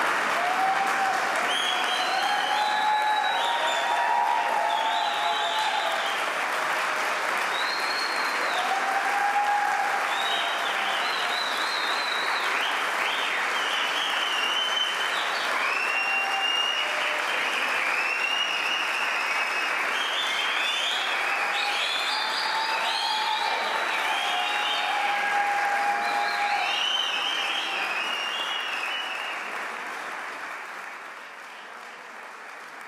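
Concert audience applauding steadily, with voices calling out over the clapping, fading away near the end.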